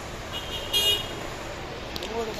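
A brief horn toot, lasting about half a second, starting about a third of a second in, over a steady hum of background traffic noise.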